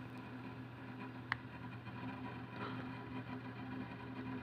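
Faint steady low hum of background noise, with a single short click a little over a second in.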